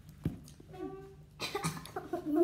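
A light knock, then a child's short hummed sound and a brief cough about one and a half seconds in.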